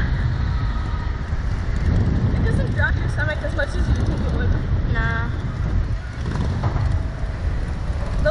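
Wind rumbling on the microphone of the ride's onboard camera as the open slingshot-ride capsule sways, with a few short voice sounds from the riders about three and five seconds in.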